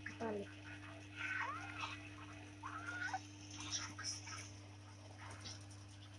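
Kitten mewing: a few short, high-pitched mews between about one and three seconds in, over a steady low hum.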